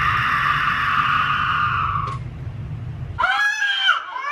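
A woman's long, high scream, held steadily and cutting off about two seconds in. Near the end a young child's wailing cry starts, rising and falling in pitch.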